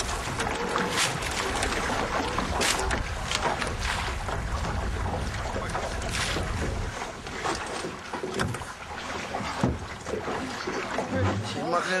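Wind buffeting the microphone on a small open boat at sea, with water against the hull and a few sharp knocks. The low rumble drops away about seven seconds in.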